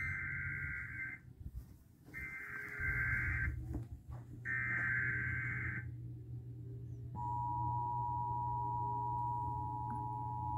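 Emergency Alert System broadcast: the SAME digital header sounds as three short bursts of buzzing data tones, each lasting under a second and a half, with about a second between bursts. About seven seconds in, the steady two-tone attention signal begins, announcing the severe thunderstorm warning that follows.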